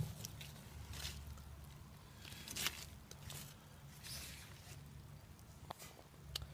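Faint rustling of moist worm-farm bedding (banana peels, shredded newspaper and castings) being stirred and scratched through, in a few short scrapes.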